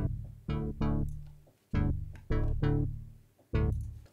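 Plucky UK garage chord stabs from the Xfer Serum wavetable synth, played in a syncopated pattern. Each chord starts sharply and fades quickly as a snappy envelope closes the low-pass filter.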